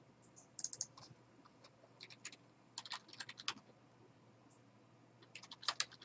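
Faint typing on a computer keyboard: a few short runs of keystrokes with pauses between them.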